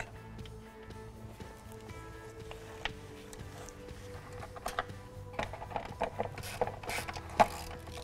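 Quiet background music, with scattered clicks and taps of hand tools as the screws of a plastic engine cover are taken out, most of them in the second half.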